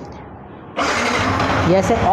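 Yamaha R15 V3's 155 cc single-cylinder fuel-injected engine starting up about a second in, then running.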